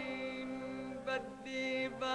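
Lebanese song music: a voice singing a melody in held, ornamented phrases over a steady accompaniment.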